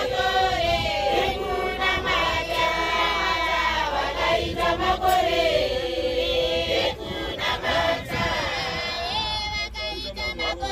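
A crowd of women singing together in chorus, many voices at once, with a few sharp handclaps in the second half.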